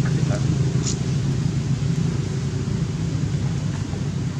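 A steady low mechanical hum, like an engine running nearby, with a few brief faint high chirps about a second in.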